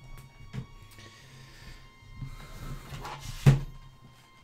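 Plastic Blu-ray case and disc being handled: light clicks and a brief rustle, then one sharp, louder knock or snap near the end.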